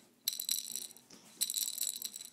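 A fabric butterfly baby toy with a rattle inside, shaken in front of a baby, jingling in two bursts of about a second each.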